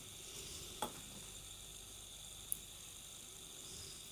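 Faint steady hiss, with a light click a little under a second in.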